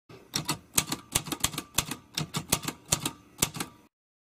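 Typewriter keys clacking as a sound effect, a quick run of sharp clicks, often in pairs, about five a second, that stops just before the end.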